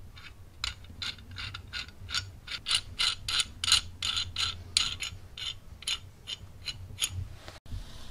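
The knurled adjusting nut of an old Swedish adjustable wrench is spun along its threaded rod, making a steady series of sharp metallic clicks, about three to four a second, that stops shortly before the end.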